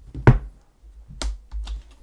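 A few sharp plastic clicks and knocks from handling a laptop battery pack and a rugged laptop on a desk, the loudest about a quarter second in and another just past a second, with dull low thumps beneath.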